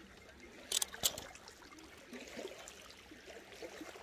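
Faint trickle and lap of fjord water against a rocky shoreline, with two short sharp clicks about a second in.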